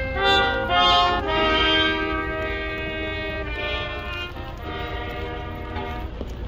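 Brass band playing a slow tune in long held notes, with a steady low rumble underneath.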